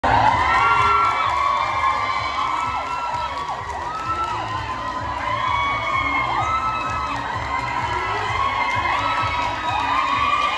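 A large crowd of children shouting and cheering, many high-pitched voices overlapping in a steady din.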